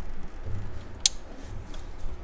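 Handling noise from a camera being fitted into an engine bay: low rubbing and knocking, with one sharp click about a second in.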